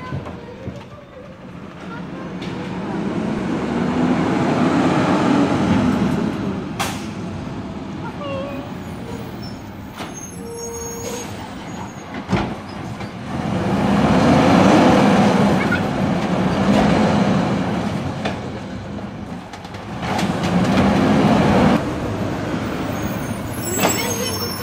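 Automated side-loader garbage truck's diesel engine revving in three surges as it drives up and pulls in to the curb.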